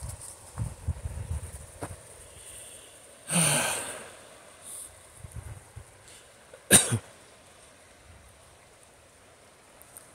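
A man's breath sounds close to the microphone: a long exhale a little after three seconds, then a short, sharp, louder burst from his nose or throat near seven seconds, the loudest sound here.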